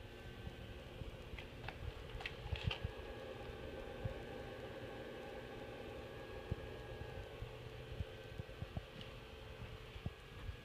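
Electrolysis rust-removal bath running off a battery charger: a faint steady hum and hiss with scattered soft pops and clicks, and a few sharper ticks in the first three seconds.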